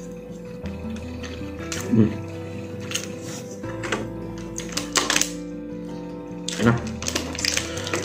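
Background music with long held notes, over scattered light clicks and scrapes of a plastic spoon and fork working food in a plastic food box. The clicks come loudest around five seconds in.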